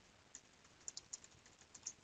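Faint computer keyboard typing: a quick, uneven run of keystrokes.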